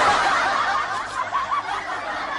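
Loud laughter that breaks in suddenly and carries on as a run of short, wavering laughs.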